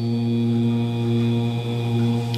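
A man's voice chanting, holding one long note at a steady low pitch.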